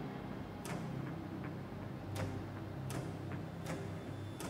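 Sharp, evenly spaced ticks, about one every three-quarters of a second, like a clock ticking, over a low steady hum.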